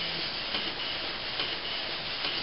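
Canon PIXMA iP4500 inkjet printer printing: the print head carriage shuttles across the page with a steady whirring rub, and two faint ticks come through.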